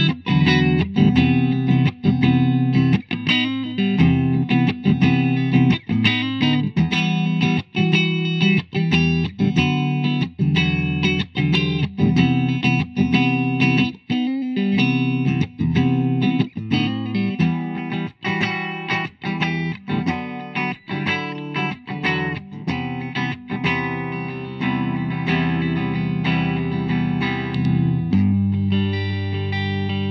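Electric guitar, a 2007 Gibson Les Paul Studio Premium Plus with humbucking pickups, played through a clean amp tone in a steady run of strummed chords and picked notes, first on the neck pickup, then on the middle position with both pickups. The playing turns to more sustained, ringing chords in the last few seconds.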